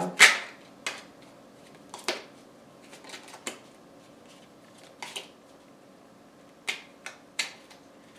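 Mini tarot deck being shuffled by hand: scattered sharp clicks and snaps of the cards, irregular, the loudest right at the start.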